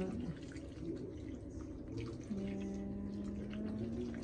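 Water poured from a measuring jug into a pan of raw chicken, potato chunks and soaked dal, splashing and trickling onto the ingredients. A steady low hum comes in about halfway through.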